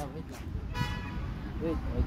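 A brief high-pitched toot, one steady tone lasting about a third of a second, comes about a second in over a low background rumble.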